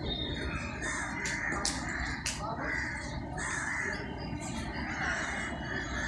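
Crows cawing repeatedly, a harsh call every half second to second, over a steady low background rumble. A few short sharp clicks come about two seconds in.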